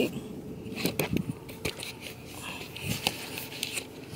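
Handling noise: scattered soft clicks and rustles as the camera is moved about, over a faint steady hum.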